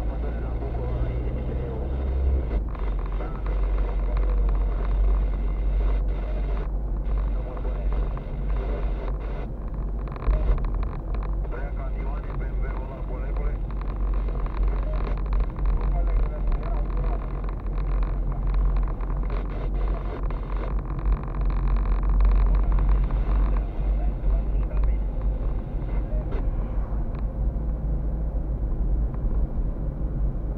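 Steady low rumble of a car driving, heard from inside the cabin, with indistinct talking over it.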